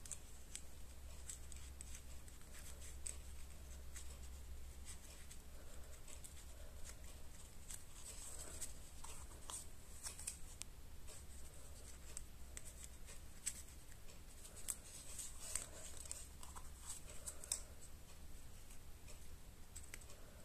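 Faint rustling and scattered light clicks of cardstock being handled as paper leaves are slipped between paper flowers on a wreath, over a steady low hum.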